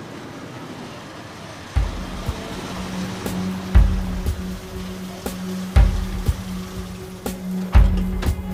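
Tense drama background music: a sustained low drone with a heavy bass hit every two seconds and lighter ticks between, coming in about two seconds in. Under it, a steady noise like a vehicle driving up.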